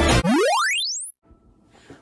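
Intro music stops right at the start, then an electronic sound effect sweeps steeply upward in pitch for under a second, ending about a second in. Faint room tone follows.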